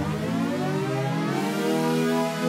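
Electronic synth music played through a pitch-shifter plugin set to one octave up, bending smoothly upward in pitch over about the first second as the momentary pitch button is held, then holding at the raised pitch.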